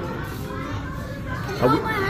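Children's voices and chatter in a busy café, with one child's short, loud call sliding in pitch near the end.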